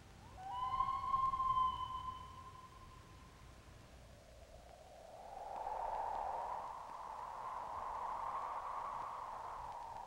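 A common loon's wail: one long call starting about half a second in with a short upward slide, then held for about two seconds. From about five seconds a rush of wind swells and slowly fades.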